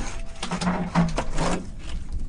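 Scraping and knocking of a bucket and a stirring tool inside a rusty steel barrel while clay slip is mixed. A low tone sounds three times in short pulses through the middle of it.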